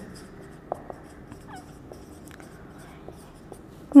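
Marker pen writing on a whiteboard: faint scattered taps and short squeaks of the tip on the board, the sharpest tap a little under a second in.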